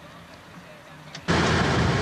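Faint low hum, then a little over a second in, loud steady road and wind noise inside a moving car cuts in abruptly, just after a click.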